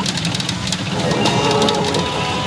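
Sanyo PA Gin Para Mugen Carnival pachinko machine in play: a loud, steady low din with many sharp clicks. The machine's music and effects come back in about a second in, as the reels spin.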